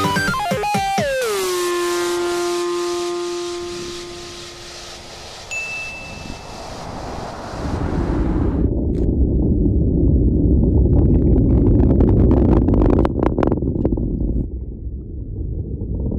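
Electronic music ends with a downward pitch slide into one long held note that fades away, followed by a brief high tone. Then a loud, low rocket-launch rumble with crackling starts about halfway through and carries to the end, heard from a distance.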